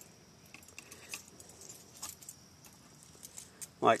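Faint, scattered metallic clinks and ticks of a bow saw blade's end ring being handled and fitted over the end of a green birch stick.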